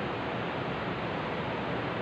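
A steady, even hiss of background noise, with no speech.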